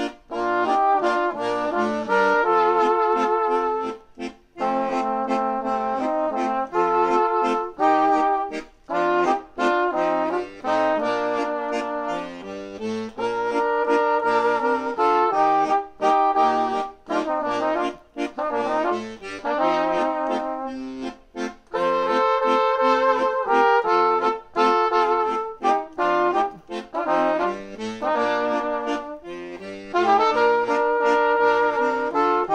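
A waltz played as a multitracked one-man band: a piano accordion accompanies two layered trumpet-type brass horn parts. The tune moves in phrases of held notes with brief breaks between them.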